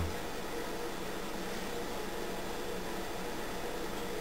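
Steady, even background hiss with no distinct events: room tone, such as a fan or air conditioner or the recorder's own noise.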